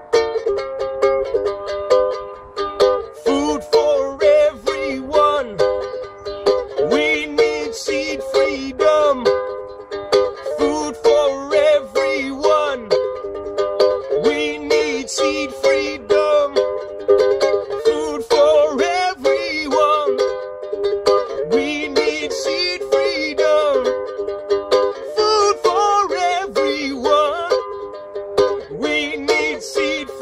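Ukulele strummed in a steady rhythm through a D minor, C, G chord progression, with a man singing a chant over it.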